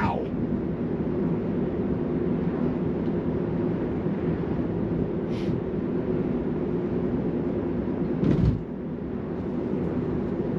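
Steady road and tyre noise inside a Tesla's cabin while cruising, with no engine sound, only the electric car rolling along. There is a brief thump about eight and a half seconds in.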